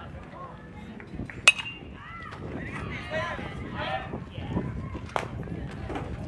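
A metal baseball bat hits a pitched ball about a second and a half in, one sharp ping with a short ring, followed by spectators' voices shouting and calling. A second, fainter click comes near the end.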